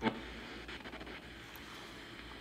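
Faint, even hiss of AM radio static from a Tyler TCP-02 portable cassette player's radio, played through a small speaker while the tuning wheel is turned between stations. There is a single sharp click right at the start.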